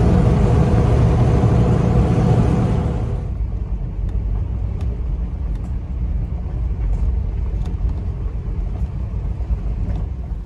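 Road noise inside the cab of a Dodge Power Wagon pickup while driving: a loud rush of tyres on pavement, changing suddenly about three seconds in to a lower, steady rumble with a few faint ticks and rattles as the truck rolls along a dirt road.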